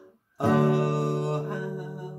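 Acoustic guitar: after a brief silence, a chord is strummed about half a second in and left to ring, slowly fading.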